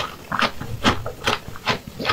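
Close-miked chewing of a crunchy, hard bite, with a sharp crunch about every half second.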